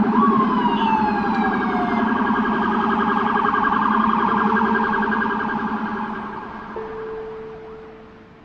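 Emergency vehicle sirens wailing, several overlapping with falling pitch sweeps, fading away over the last few seconds. A single steady held tone comes in near the end.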